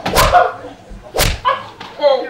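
Two sharp smacks of a long wooden stick struck down across a person's back, about a second apart, with short vocal cries between them.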